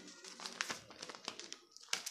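Sheets of paper rustling and crinkling in the hands: a run of small, irregular crackles.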